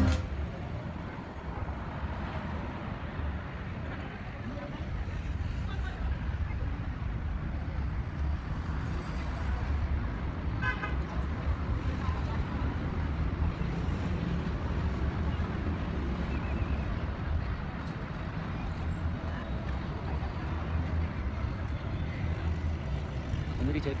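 Night street ambience: a steady low traffic rumble with scattered background voices, and a short vehicle horn toot about eleven seconds in.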